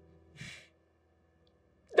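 One short breath from a man, picked up close on a lapel microphone about half a second in, followed by near silence.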